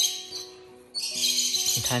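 A lovebird screeching harshly as it bites at a gloved hand from its nest box, defending its chicks: a short screech right at the start, then a longer one from about halfway in. Soft background music plays underneath.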